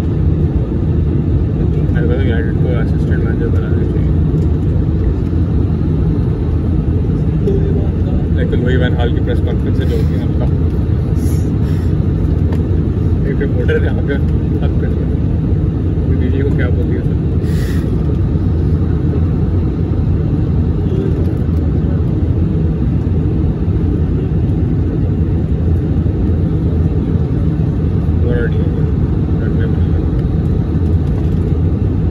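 Steady, loud cabin noise inside an Airbus A320 on approach to land, heard from a window seat by the wing: a constant low roar of engine and airflow.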